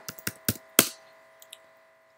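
Keystrokes on a computer keyboard: four or five sharp clicks in the first second, then only a faint steady hum.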